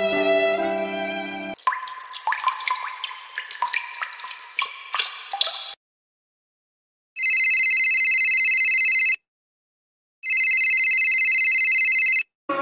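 A slow violin piece ends about a second and a half in and gives way to a few seconds of plinking, sparkly transition sounds. After a short silence a telephone rings twice, each ring a steady high tone lasting about two seconds, with a second's gap between them.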